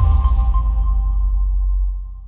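Electronic logo sting: a deep, sustained bass drone under a steady ringing tone, with a high hiss on top that stops about half a second in; the whole starts to fade near the end.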